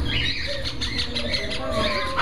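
Caged parrots and other pet birds calling, with short high chirps and some held whistle-like notes, over a steady low room rumble.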